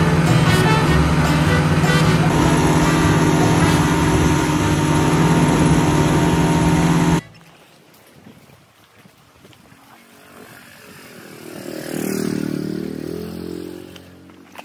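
Motorboat engine running steadily at speed, with water rushing along the hull; it cuts off abruptly about seven seconds in, leaving a much quieter background.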